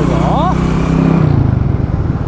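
Small motorcycle's engine running steadily while riding along a road. Its note drops and turns rougher about a second in. Near the start a man's voice briefly slides up and down.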